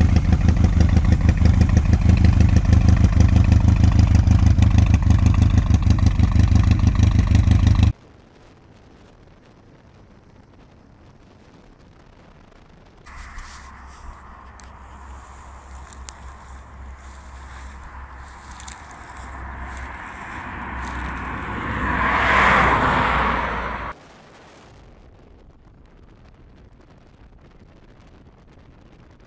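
Yamaha XS2's air-cooled 650 cc parallel-twin engine idling with an even, steady pulse for about eight seconds. After a cut, a quieter stretch where a rushing sound swells to a loud peak and then stops abruptly.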